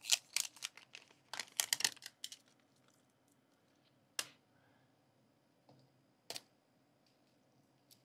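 Plastic Mini Brands capsule ball handled while its sticker seal is peeled: a quick run of crackling clicks over the first two seconds or so, then a few single clicks and taps.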